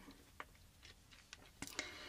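Near silence: quiet room tone with a few faint, sharp clicks, more of them close together near the end.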